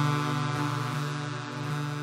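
Electronic techno outro: a sustained synthesizer drone on one steady low pitch with a rich stack of overtones and faint ticks, with no kick drum, slowly fading.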